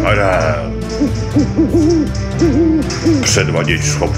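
Cartoon owl hooting: a falling swoop at the start, then a quick run of about seven short hoots.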